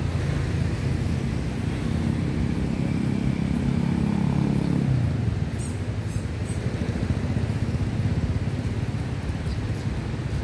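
A road vehicle's engine passing by, its hum building and then fading away about five seconds in, over a steady low rumble of traffic.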